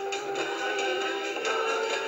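Women's choir holding a sustained chord of several voices, starting suddenly and breaking off after about two seconds, heard through a computer's speakers.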